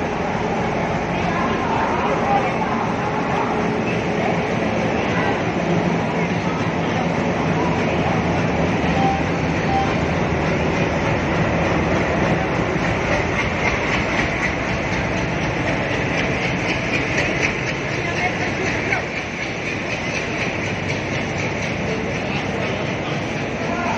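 A diesel locomotive hauling a passenger train rolls past close by at a station platform: a steady engine and wheel-on-rail noise, with the passing coaches following near the end.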